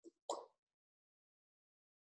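Near silence, broken once near the start by a brief soft mouth noise from the speaker between sentences.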